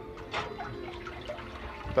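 Water swirling and sloshing in a cheese vat as its electric stirrer's paddles turn, with a faint steady hum underneath and a brief louder splash about half a second in.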